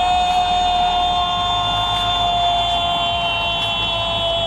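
A loud, steady held tone of several pitches together, sinking very slightly in pitch.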